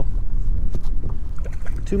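Steady low wind rumble on the microphone with sea water lapping around a kayak and a few faint clicks.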